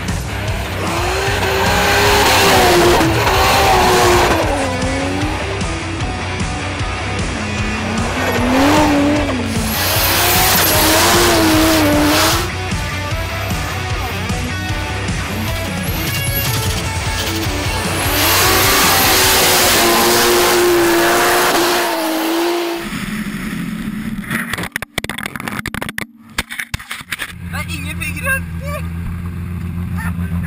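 Toyota Supra drift car's engine revving up and down in long sweeping runs as it slides on ice and snow, in several loud bursts with tyre noise. Background music with a steady low bass runs underneath.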